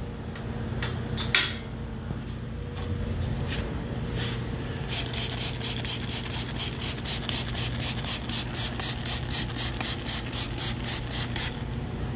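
Trigger spray bottle of soapy water being pumped fast, about four sprays a second, over a pressurised cylinder head to check for leaks. Before the spraying come a few metal clicks and knocks from the test bench, over a steady low hum.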